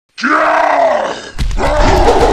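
A man's deep, strained groan of effort that begins a moment in and holds for about a second, followed by a second grunting groan near the end.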